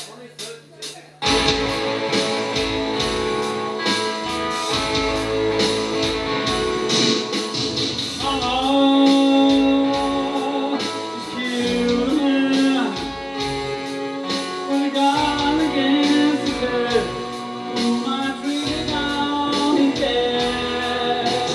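A few evenly spaced ticks, then about a second in a rock song starts at full volume: a backing track with live electric guitar. A man sings lead over it from about eight seconds in.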